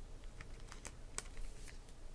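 Faint, light clicks and ticks of trading cards being handled: card edges tapping and sliding as cards are picked off and set back on a small stack, a handful of separate clicks spread through the moment.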